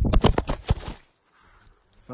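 Handling noise from the camera phone being grabbed and swung around: a quick run of scrapes and knocks on the microphone lasting about a second.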